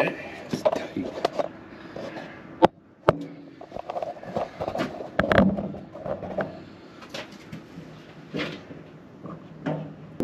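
Indistinct talk with handling clatter, and two sharp knocks about three seconds in.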